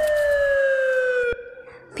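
Siren sound effect: one long wail falling slowly in pitch, which cuts off abruptly with a click a little over a second in. It signals a patrol of village watchmen arriving to catch people breaking the lockdown.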